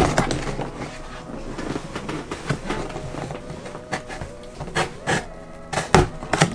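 Cardboard box and packaging being handled: irregular rustling and scraping, with a few sharp knocks and crackles near the end.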